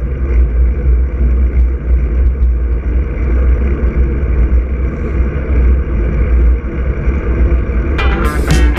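Wind rushing over the microphone of a handlebar-mounted action camera on a moving road bike: a steady, loud, low rumbling rush that rises and falls a little.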